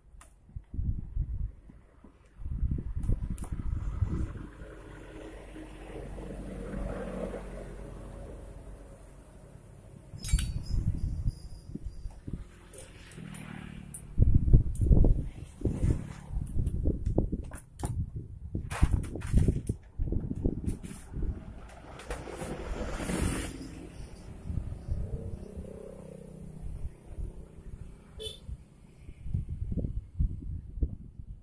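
Irregular knocks, clinks and handling noise as a throttle body is fitted and bolted onto a Honda Beat FI scooter engine by hand and with hand tools.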